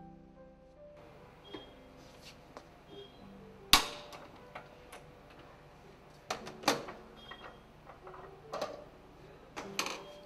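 Sharp metallic clicks and clinks of the spanner and torque tool on the stainless-steel upthrust pedestal of a Grundfos SP submersible pump as it is torqued down and the tool is taken off. The loudest click comes a little under four seconds in, and several lighter ones follow in the second half.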